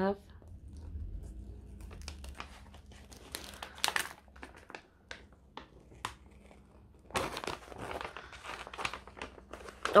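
Paper crinkling and crackling as the protective cover sheet is peeled back off the sticky adhesive face of a diamond painting canvas, in irregular bursts of rustle that are busiest near the end.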